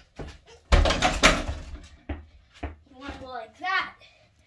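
A dunk into an over-the-door mini basketball hoop: a loud crash about a second in as the ball and hands hit the rim and backboard, rattling the hoop against the door. A couple of short knocks follow, and a child's voice comes in near the end.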